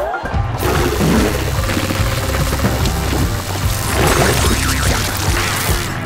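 Background music over a continuous rushing, sloshing water sound as a rubber plunger is pumped in a water-filled toilet bowl sealed with cling wrap.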